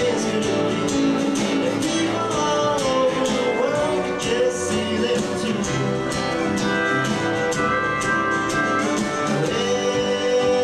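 Live band playing a mid-tempo song: electric guitars over bass and a steady drum beat.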